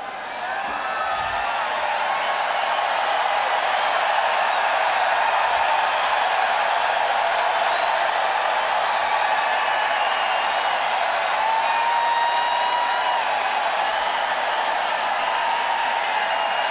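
Large arena crowd applauding and cheering at the end of a song. The sound swells over the first couple of seconds, then holds steady.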